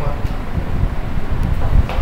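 A man's voice speaking over a loud, steady low rumble.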